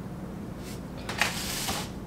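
A woman crying: a faint short sniff about half a second in, then a louder shaky sobbing breath that lasts under a second.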